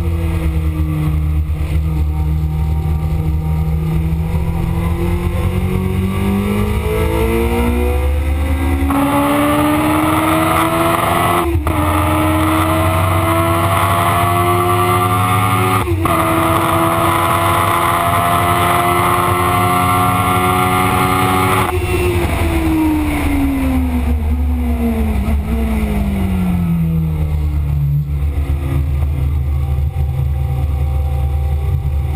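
Kawasaki ZX-7R inline-four engine heard from onboard under hard acceleration, its note climbing steadily for about nine seconds. There are two brief breaks for upshifts, around a third and halfway in. The note holds high, then falls away through the last third as the throttle closes for a corner, with steady wind rush over the bike.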